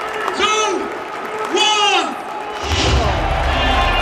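A man's voice shouting short calls over a stadium public-address system, echoing around the stands. A deep low rumble comes in about two-thirds of the way through and keeps going.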